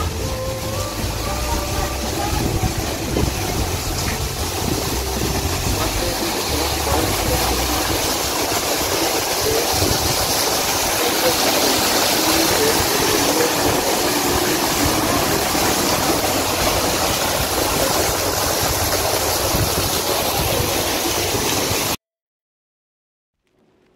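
Steady rushing and splashing of water from a small waterfall spilling over the rocks of an ornamental rock fountain. Background music fades out in the first few seconds.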